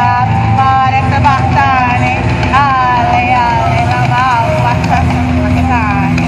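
Loud show soundtrack from a sound system: a high voice sliding up and down in pitch in drawn-out phrases over a steady low drone.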